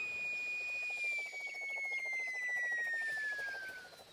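Cartoon whistling sound effect of a football flying through the air: one long whistle that slowly falls in pitch, with a faint rapid flutter underneath.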